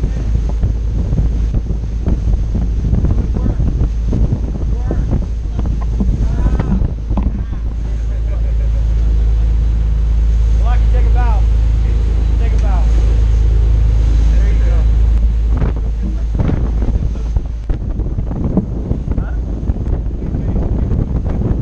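Wind buffeting the microphone over the steady low drone of a sportfishing boat's engines running at speed, louder for a few seconds in the middle. Voices call out briefly around the middle, half lost in the wind.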